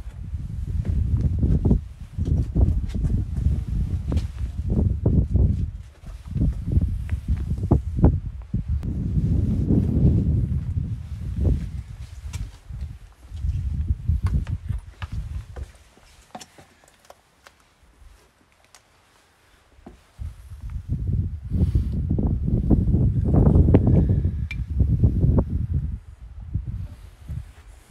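Footsteps over brick rubble and debris, with many short sharp clicks and knocks, under loud gusty wind buffeting the microphone; the wind drops away for a few seconds past the middle, then returns.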